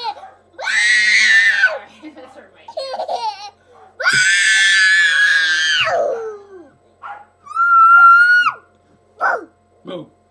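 Toddler squealing and laughing: two long, shrill high-pitched squeals, then a shorter, steadier squeal near the end, with short bursts of voice between.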